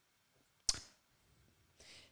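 A pause of near quiet broken by one sharp click about two-thirds of a second in, then a faint breath-like hiss near the end.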